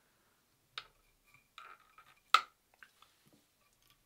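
Faint, sparse handling clicks and rustles of fingers and hackle pliers winding a soft hackle onto a tube fly in a fly-tying vise, with one sharper click a little past the middle.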